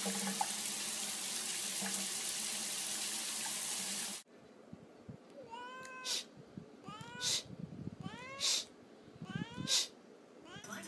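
A steady rushing noise for about four seconds that cuts off suddenly, then a cat meows four times, each meow followed by a short, sharp burst of noise.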